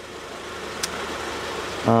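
Outdoor road traffic: a vehicle's engine and tyre noise growing gradually louder as it approaches, with one faint click about a second in.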